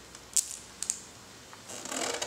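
A few light, sharp taps of a baby's hand on a plastic seat tray, about a third of a second in and twice more near a second, then a soft rustling noise rising near the end.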